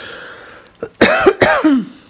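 A person coughs twice in quick succession about a second in, the second cough trailing off with a falling pitch.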